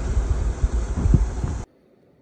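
Wind rumbling on the microphone with a few soft handling bumps. It cuts off suddenly near the end, leaving near silence.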